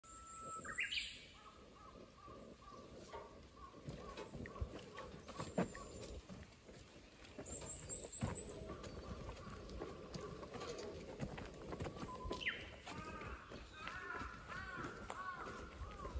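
Birds calling: a quick rising whistle about a second in, steady wavering calls, a brief high trill around the middle, then a run of short repeated clucking calls near the end.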